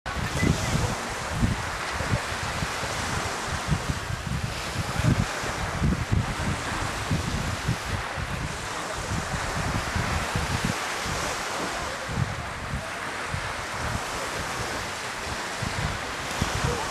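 Seaside wind ambience: wind buffeting the microphone in irregular low rumbles over a steady hiss of breeze and distant surf.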